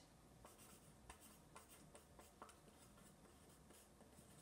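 Faint scratching of a pen writing on lined paper, a string of short irregular strokes.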